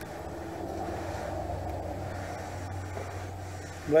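Clothes iron sliding along iron-on wood edge banding on a plywood edge, a steady rubbing, over a low steady hum.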